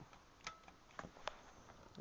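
Near silence broken by three faint short clicks as a hand handles a laptop's DVD drive tray.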